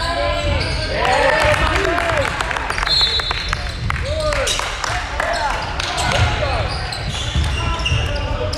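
Basketball shoes squeaking on a hardwood gym floor and a ball bouncing during play, with a short shrill referee's whistle about three seconds in.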